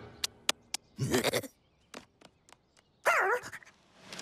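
Cartoon animal character's voice: three quick ticks, then a short wavering cry about a second in, a few soft clicks, and a louder bleat-like wavering cry that falls in pitch near the end.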